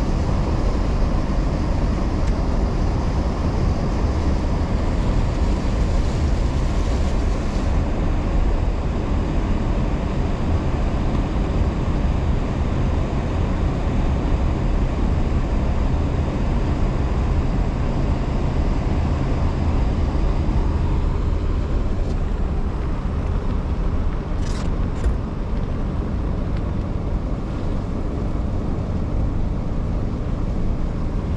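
Steady low rumble of a car's engine and tyres on a wet, partly flooded road, heard from inside the cabin, with a hiss of water that drops away about eight seconds in. Two short, sharp high sounds come close together near the end.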